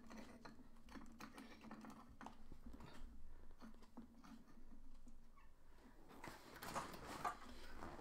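Faint, scattered light clicks and taps from small objects being handled.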